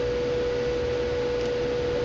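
A steady electrical whine, one unchanging tone near 500 Hz, over a low hiss and hum. It is background noise from the recording setup.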